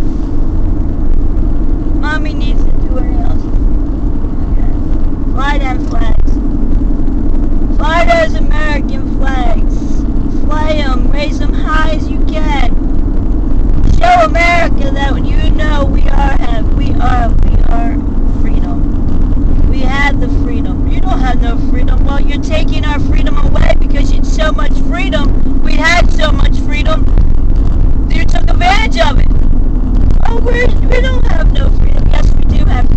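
A car's steady road and engine drone heard from inside the cabin while driving, a constant low hum with a voice talking on and off over it.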